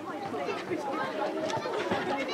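Several overlapping, indistinct voices calling and chattering at once: children shouting as they play soccer, mixed with chatter from the sideline.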